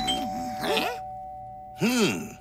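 Doorbell chime ringing at the start, its tone held and slowly fading, over cartoon background music.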